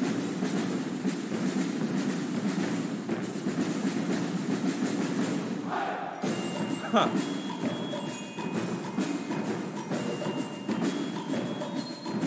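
Performance audio from a military band and drill team: a dense percussive clatter of many sharp clicks. After a cut about six seconds in, high ringing mallet-percussion notes, like a glockenspiel or bell lyre, sound over it.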